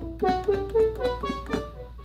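A synthesizer played from a Novation SL MkIII 49-key MIDI keyboard: about six single notes climbing step by step up the D major scale.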